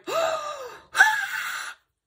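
A woman gasping twice in excited surprise; the second gasp starts sharply and is higher-pitched.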